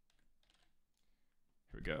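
Faint computer keyboard typing, scattered light keystrokes.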